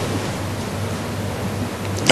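Steady hiss with a faint low hum: the recording's background noise, with no other sound standing out.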